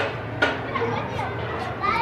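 Children's voices in the background, calling and playing, with two sharp knocks, one at the start and one about half a second later.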